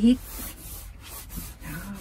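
Faint, uneven rubbing noise.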